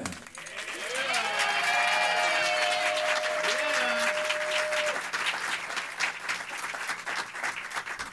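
Audience applauding and cheering as performers come on stage, with one voice holding a long whoop through the first half. The clapping slowly thins toward the end.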